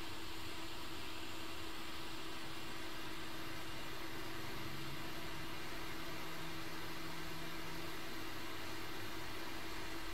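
JBC hot air rework gun blowing a steady stream of hot air onto an ASIC chip to reflow its solder: an even hiss with a faint steady hum underneath.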